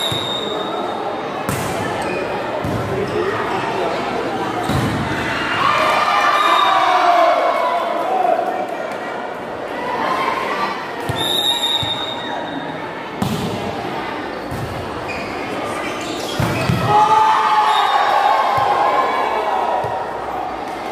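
Volleyball being struck and bouncing on a hard court floor in a large hall, a series of sharp smacks. Shouting voices of players and spectators swell twice.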